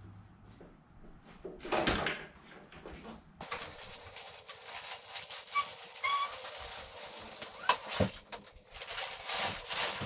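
A plastic-wrapped plastic kayak sliding down off a car onto mats: rustling of the plastic wrap and the hull scraping, with a short squeak around six seconds and a couple of sharp knocks near eight seconds.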